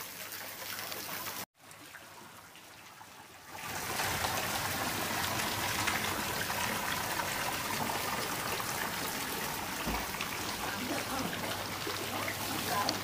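Water trickling steadily at a catfish pond, louder from about four seconds in.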